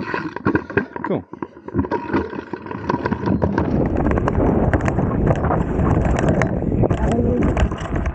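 Dirt jump bike rolling fast down a steep dirt chute: tyres running over loose dirt and leaf litter, the chain and frame rattling and knocking over the bumps. A low rumble of wind on the microphone builds from a few seconds in as the bike gathers speed.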